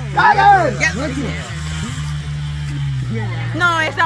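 Motorcycle engine running at steady revs, a continuous low drone that rises and falls only slightly. A shout is heard over it in the first second.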